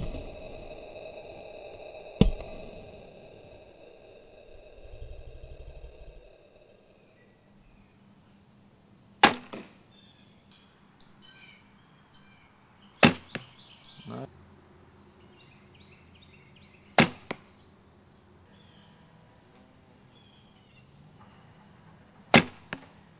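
Four traditional-bow shots, about two, nine, thirteen and seventeen seconds in: each a sharp thump of the string at release, most of them followed a fraction of a second later by a smaller knock as the arrow strikes the foam 3D target.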